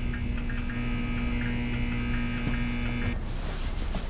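A steady hum made of several fixed tones, with a faint regular ticking in it, that cuts off about three seconds in and gives way to a rushing noise.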